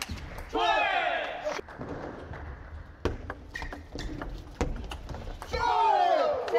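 Table tennis doubles rally: sharp, irregular clicks of the plastic ball off the rackets and the table. There are two loud shouts with falling pitch, one about half a second in and one near the end as the point is won.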